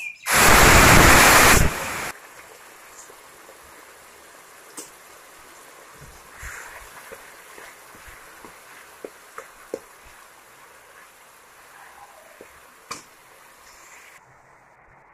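Onion paste tipped into hot oil in a kadhai, sizzling loudly for about two seconds, then settling into a quieter steady frying hiss. Light scrapes and clicks of a spatula against the pan come and go.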